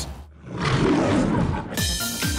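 Animated lion's roar sound effect, about a second long, followed near the end by the return of bright children's theme music.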